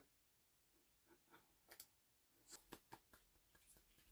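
Near silence: room tone with a few faint clicks in the second half.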